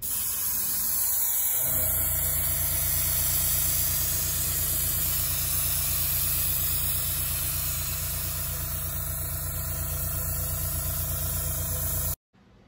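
Airbrush spraying paint with a steady hiss of air, joined about a second and a half in by the steady hum of the small air compressor motor that feeds it.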